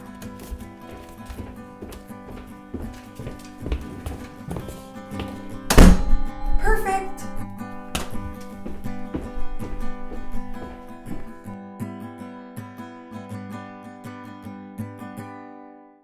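Background music with sustained notes, broken about six seconds in by one loud crash, followed briefly by a voice; the music fades out at the end.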